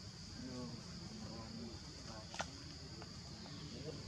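Steady high-pitched drone of insects, with faint wavering calls underneath and a single sharp click a little past halfway.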